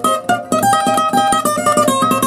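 Acoustic guitar, capoed at the third fret, picking a quick run of single and paired notes from a bachata lead line in G major, about ten notes a second.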